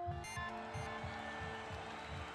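Background electronic music with a steady low beat under held tones.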